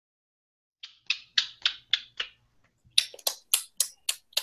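A person's hands making a quick run of sharp snaps, about four a second: six in a row, a short pause, then four more.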